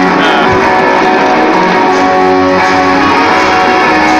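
Live rock band playing the opening of a song, guitar to the fore, recorded loud through a low-quality camera microphone.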